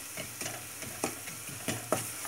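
Diced onion and flour frying in butter and oil in a stainless steel pot, sizzling while a wooden spoon stirs and scrapes across the pot bottom, with a few sharp clicks of the spoon against the metal. The flour is being toasted in the fat to cook off its raw smell.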